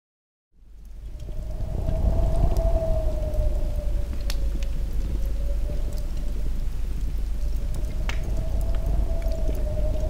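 Sound-design drone laid under a disintegration effect: a deep rumble with one held, slightly wavering tone, starting about half a second in and swelling over the next second or so, with a couple of faint crackles.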